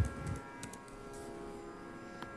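Faint steady hum made of several held tones, with a soft low thump right at the start.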